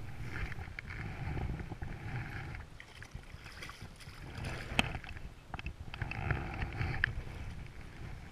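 A hooked trout splashing and thrashing in the water as it is drawn into a landing net, with water sloshing around the net and a few sharp knocks. Wind rumble on the microphone runs underneath.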